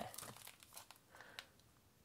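Faint crinkling and light clicks of a Blu-ray case's plastic shrink-wrap being handled and turned over, dying away after about a second and a half.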